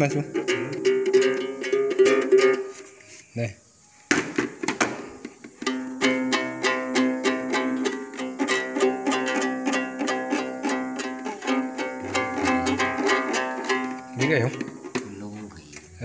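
Đàn tính, the Tày long-necked lute with a dried-gourd body, plucked rapidly and repeatedly without a real tune by someone who doesn't know how to play it, just to let its sound be heard. The plucking breaks off briefly about three seconds in, then runs steadily until near the end.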